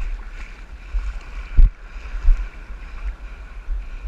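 Sea water sloshing and lapping around a camera held at the water's surface, with uneven low rumbling buffets on the microphone and one thump about one and a half seconds in.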